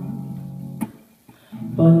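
Acoustic guitar chord ringing out and fading between sung lines, with a short sharp click about a second in and a brief lull. Near the end the guitar strums back in and a woman's singing resumes.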